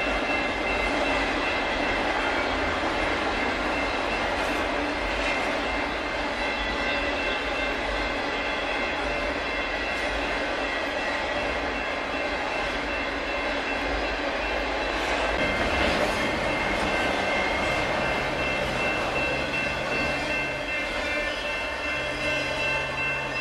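Union Pacific double-stack container train's cars rolling past: a steady rumble of wheels on rail with a thin high ringing over it. A low hum joins in near the end.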